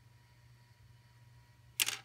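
Quiet room tone with a low steady hum, then one short, sharp handling noise near the end, as the small plastic toy toothbrush is set down on the plastic dollhouse counter.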